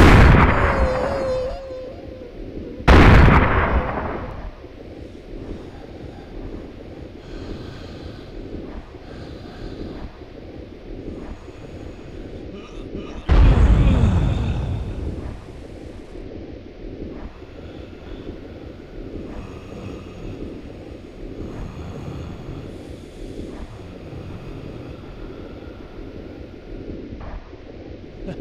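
Two loud sudden booms, one about three seconds in and one about thirteen seconds in, each dying away over a second or two, over a steady low rumble.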